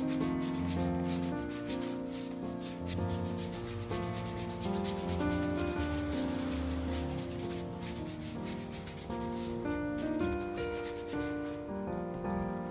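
A cloth rubbed briskly back and forth over a leather shoe sole, in quick repeated strokes, over background music with held notes.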